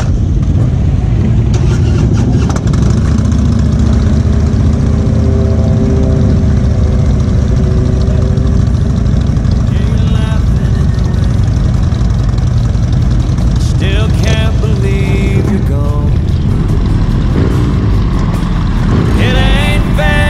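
Motorcycle engines running at road speed, with wind noise on a bike-mounted camera, as several cruiser motorcycles ride together. The sound is loud and steady.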